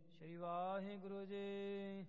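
A man chanting a line of verse in a slow, melodic recitation: the voice slides up in pitch, then holds one long steady note.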